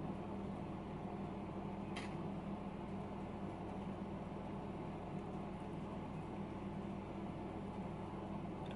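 Steady low mechanical hum of room background noise, with one faint click about two seconds in.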